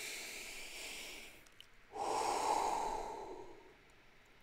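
A man breathing deeply: a long, hissy inhale lasting about a second and a half, then, after a short pause, a louder breath out through the mouth that fades away.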